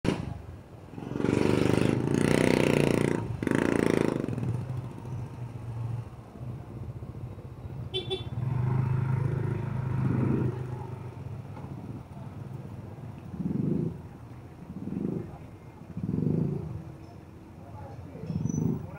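Busy city street traffic. A motorcycle engine runs close by, loud for the first few seconds, then settles to a steady low hum, with a brief high beep about eight seconds in. Voices of people nearby come in toward the end.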